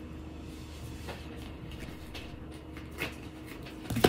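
Tarot cards being handled: a few faint clicks and taps as cards are drawn from the deck and laid on a stone tabletop, over a low steady hum.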